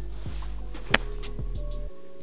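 A wedge striking a golf ball on a pitch shot: one sharp, crisp click about a second in, over steady background music.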